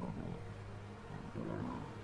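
Lions growling while attacking a Cape buffalo: two growls, one at the start and another about one and a half seconds in.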